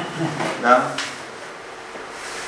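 A voice speaking briefly in the first second, with a light click about a second in, then low room noise.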